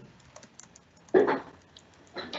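Computer keyboard typing picked up by an open microphone on a video call: scattered light key clicks, with one louder knock about a second in.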